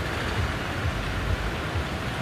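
Steady outdoor background noise: an even hiss over a fluttering low rumble, with no distinct events.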